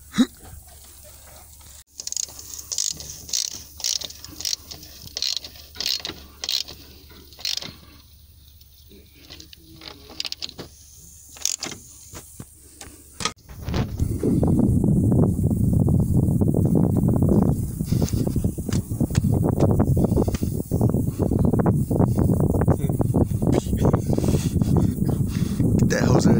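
Scattered light clicks and taps of hand work in a truck's engine bay, then, about halfway through, the truck's diesel engine starts and runs at a steady, loud idle: it is running again after a failed hose was replaced.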